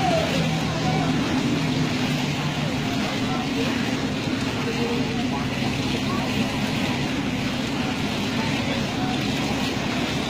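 Steady rain falling, with the low, steady hum of a vehicle engine underneath.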